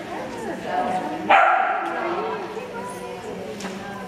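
A dog barks once, loudly, about a second in, the sound ringing briefly in a large hall, over a murmur of people talking.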